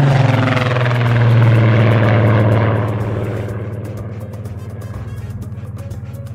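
P-51D Mustang's V-12 Merlin engine droning loudly as the fighter flies low past, holding a low steady pitch, then fading away over about three seconds. Background music runs underneath and is left on its own once the engine has faded.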